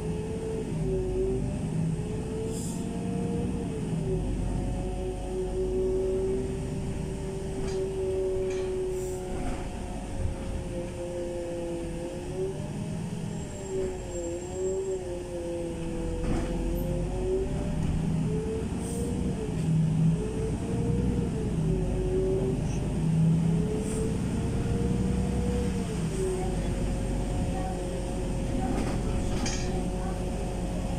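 Inside the cabin of a LiAZ 5292.65 city bus under way: the drivetrain runs with a whine that rises and falls as the bus changes speed, over a low road rumble, with a few light rattles.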